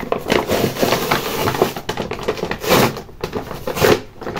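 A crumpled brown kraft-paper parcel rustling and crinkling as it is handled, in an irregular run of crackles with a few louder surges.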